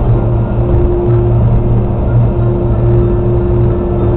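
Steady in-cabin drone of a car cruising at highway speed, with sustained low musical tones that change pitch every second or two, like ambient background music.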